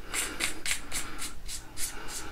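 Tail cap of an Olight Javelot Mini flashlight being screwed back onto its body after the battery is put in: the metal threads rasp in quick, even strokes, about five a second, as the fingers turn it.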